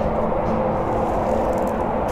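Steady low rumbling noise with faint held tones underneath, even in level and with no distinct events.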